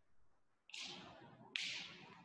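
Two short swishing rustles close to the microphone, under a second apart, each starting sharply and fading quickly, as someone moves right by the recording device.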